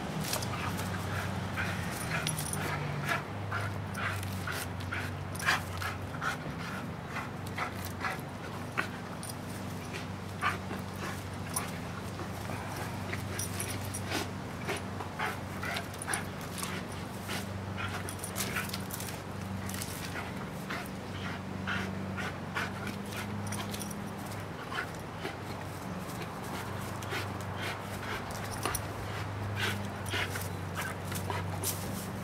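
American pit bull terrier tugging and hanging on a spring-pole toy, making a low, continuous whining sound throughout. Many short sharp clicks and rustles are scattered over it.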